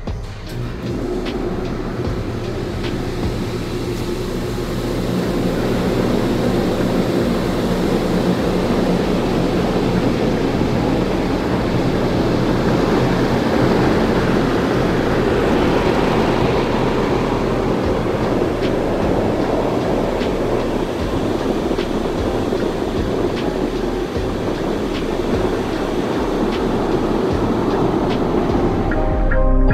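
HydroMassage water-jet massage bed running: its pump drives jets of water against the underside of the cushioned cover, giving a steady rushing rumble with a low hum. It builds over the first few seconds as the session starts, then holds.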